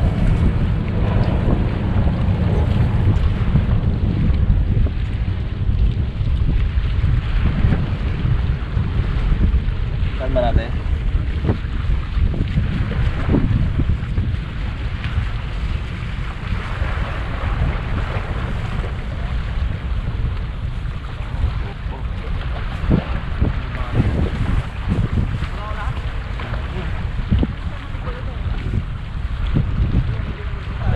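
Wind buffeting the microphone on an exposed seawall: a loud, steady low rumble that swells and dips with the gusts.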